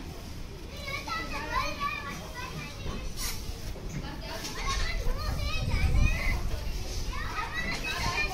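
Children's voices chattering and calling in the background, high-pitched and overlapping, with a low rumble swelling about five to six seconds in.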